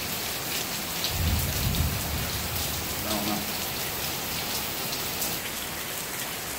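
Heavy rain falling steadily on a pool's water surface and the deck around it, with a low rumble of thunder about a second in that lasts a second or two.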